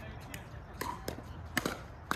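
Pickleball rally: sharp pocks of paddles striking a plastic pickleball, about five short clicks spread unevenly through two seconds, several close together near the middle.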